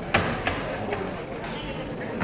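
Indistinct chatter of spectators in a large hall, with a sharp knock just after the start and a couple of fainter clicks.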